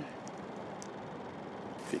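Solar-powered shed ventilation fan running behind its wall vent: a steady rush of air.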